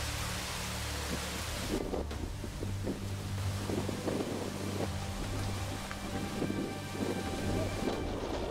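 Wind rumbling on the camera microphone, with a hiss that cuts off suddenly a little under two seconds in.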